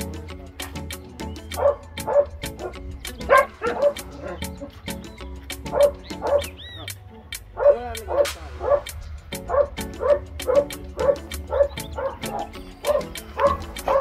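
Pit bull puppies yipping and barking, short high calls repeated many times. Background music with a steady ticking beat runs underneath.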